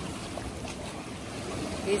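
Steady sea-and-wind noise at the water's edge: small waves washing in the shallows, with some wind on the microphone.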